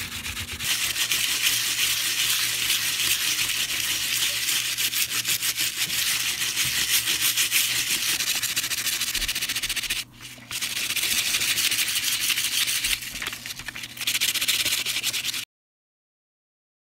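A wire dish scourer is scrubbed rapidly back and forth over an embossed copper sheet coated in dried black spray paint, rubbing the paint off the raised parts. The scratchy rubbing breaks off briefly about ten seconds in and eases for a moment around thirteen seconds. It stops suddenly just before the end.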